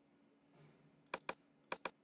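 Computer mouse clicks: two quick pairs of sharp clicks about half a second apart, heard over a faint steady hum.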